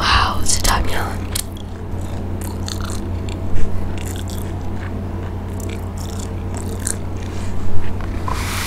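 Close-miked biting and chewing of a mozzarella corn dog's crispy fried coating, with scattered crackles and a louder sharp crunch about three and a half seconds in, over a steady low electrical hum.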